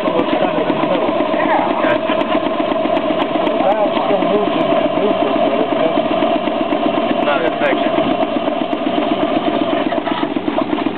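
Small two-cylinder compound (high- and low-pressure) marine steam engine running steadily, with a fast, even beat.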